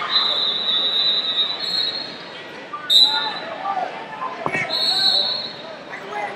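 Referee's whistle blown three times: a long blast, a short one midway and another long one near the end, with a single thud between the last two. Chatter from a large, echoing hall runs underneath.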